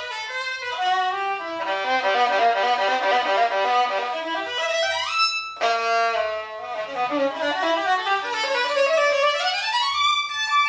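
A 1986 Edgar Körner three-quarter-size German violin with new strings, played solo with the bow. Melodic phrases step downward, a fast run climbs high about five seconds in and breaks off briefly, then another phrase rises again near the end.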